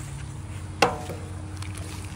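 A single sharp knock about a second in, the metal food tray striking the aluminium crawfish boiler, with a brief ring after it, over a steady low hum.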